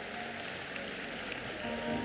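A congregation clapping, an even patter of applause in a large hall, with soft sustained keyboard chords coming in under it near the end.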